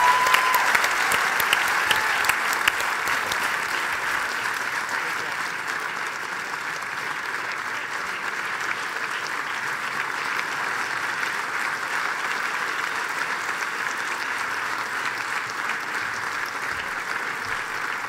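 Audience applauding, loudest in the first few seconds and then settling to a steady level.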